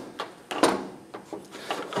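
Aluminum brake master cylinders being set down and shifted on a metal workbench: a few light knocks and scrapes, the clearest about half a second in.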